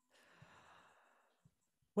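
A person's faint sigh, a soft breath out lasting about a second, during a pause in conversation.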